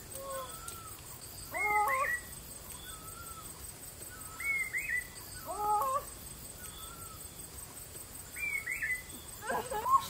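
A bird calling: short phrases of rising and falling notes about every three seconds, with single fainter notes between them.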